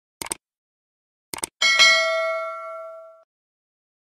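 Subscribe-button animation sound effect: two short mouse-click sounds, then a bright bell-like notification chime about a second and a half in that rings and fades away over about a second and a half.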